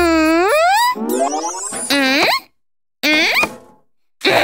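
Cartoon sound effects and wordless character voice sounds, each sliding in pitch, with a short silent gap just past halfway.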